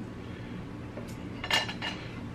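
A metal fork clinking and scraping against a plate of food, with one louder ringing clink about one and a half seconds in.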